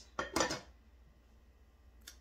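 A lid being set onto a pan on the stove: two quick clattering knocks in the first half second.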